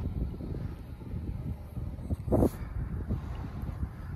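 Wind buffeting the phone's microphone outdoors, a low uneven rumble, with a brief breathy voice sound about two and a half seconds in.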